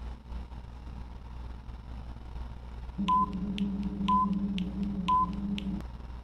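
Electronic countdown-timer sound effect, starting about halfway: a steady low drone with ticks about twice a second and a short beep about once a second, stopping just before the end.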